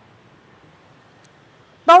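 Quiet room tone with a faint low hum and one faint tick about a second in, then a woman starts speaking near the end.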